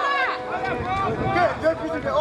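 Football spectators' voices, people calling out and talking over one another, with a low rumble of wind on the microphone.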